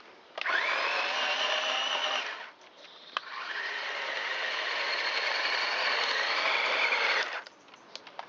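Electric drive motors and gearboxes of a 1/24-scale Heng Long RC tank whining as it drives at boost speed, their feeds slowed by series diodes. Two runs: a short one of about two seconds that opens with a rising whine, then after a brief pause a longer run of about four seconds that cuts off near the end.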